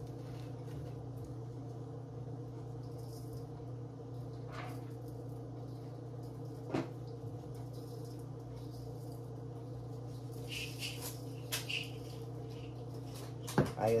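Powdered chicken seasoning shaken from a plastic container into a steel mixing bowl, heard as a few brief light rattles about ten seconds in, over a steady low electrical hum with a couple of sharp clicks.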